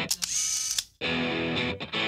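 Background guitar music breaks off for a DSLR shutter click followed by a high hiss, lasting under a second; the music comes back about a second in.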